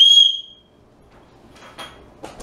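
Dog-training whistle blown in one short, steady, high-pitched blast of about half a second, followed near the end by a faint brief pip. It is the recall signal, which the dogs have learned means treats.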